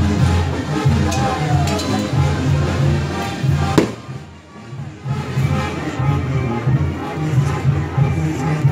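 Band music with a steady low, rhythmic bass line. A single sharp bang sounds a little before the middle. The music then drops away for about a second and comes back.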